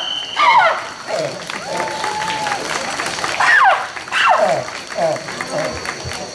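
Audience applauding, with loud whoops and shouted calls that swoop down in pitch over the clapping.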